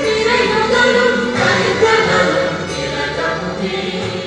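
A choir singing a ceremonial anthem with instrumental accompaniment, growing quieter near the end.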